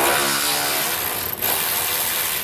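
A cordless power ratchet running, spinning off one of the two 15 mm nuts that hold the truck's factory jounce bumper. It runs steadily, dips briefly about a second and a half in, then runs again.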